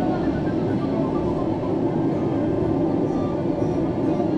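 Steady hum and rumble of a Disney Resort Line monorail car standing at a station, heard from inside the car.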